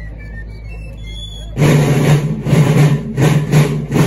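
Marching field drums (rope-tensioned side drums) begin beating a loud cadence of rolls and strokes about a second and a half in, after a few faint high whistling notes.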